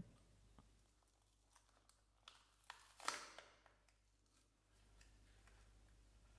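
Faint handling of a plastic blister pack: a few small clicks, then a short plastic crinkle about three seconds in as the bubble is worked open.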